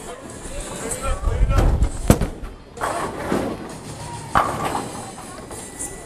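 A bowling ball released onto a wooden lane lands with one heavy thud about two seconds in, among background chatter and noise in a bowling alley.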